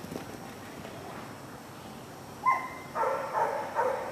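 Dog barking: one sharp high bark about two and a half seconds in, then a quick run of barks near the end.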